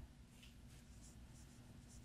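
Faint scratching strokes of a marker writing on a whiteboard, several short strokes in a row, over a faint steady low hum.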